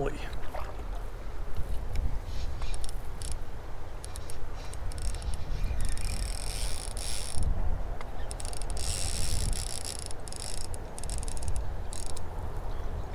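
Baitcasting reel working as a hooked smallmouth bass is fought: gear and drag clicking, with two longer high hissing stretches in the second half, over a steady low wind rumble on the microphone.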